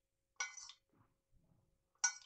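A steel spoon clinks once against a small steel bowl while scooping spice, with a short metallic ring, followed by a little faint scraping.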